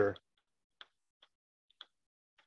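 Chalk clicking against a blackboard while writing: a handful of short, sharp ticks, irregularly spaced, starting just under a second in. A spoken word trails off at the very start.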